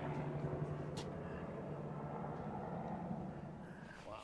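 Faint, steady low hum of a distant motor, fading near the end, with one light click about a second in.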